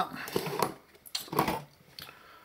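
Light clicks and knocks as a power supply assembly of circuit board, transformer and capacitors is handled and lifted out of its metal housing.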